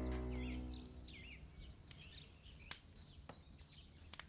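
Background music fading out within the first second, leaving faint birdsong: short, high, curling chirps, with a few sharp clicks.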